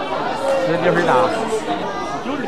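Speech: several people chatting, voices overlapping.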